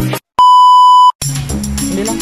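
A single loud, steady electronic beep, one pure high tone held for about three quarters of a second and cut off sharply, set between the end of one music track and the start of another with tambourine and drums.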